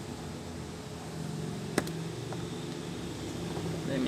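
Steady low mechanical hum of the workshop's background, with a single sharp click a little under two seconds in.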